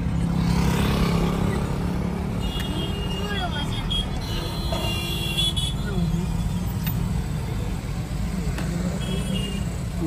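Steady low rumble of a car driving slowly, heard from inside the cabin, with faint voices in the background.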